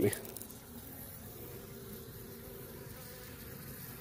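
Honeybees from an opened hive buzzing, a steady, even hum.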